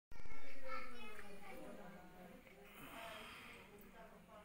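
Indistinct voices talking, loudest in the first second and then fading.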